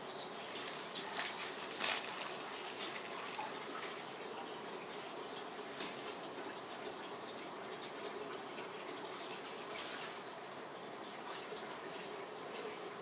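Steady, faint watery hiss of cooking in a kitchen, with a few faint clicks in the first half.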